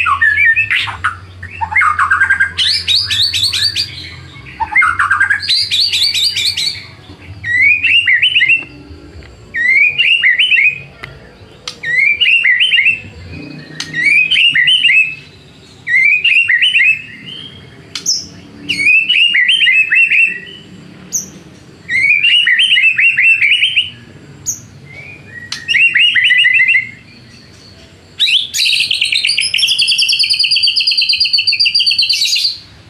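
A male white-rumped shama (murai batu) sings loudly. It opens with varied rapid trills and sweeping notes, then from about eight seconds repeats a short phrase roughly every second and a half, and breaks into a fast trill near the end.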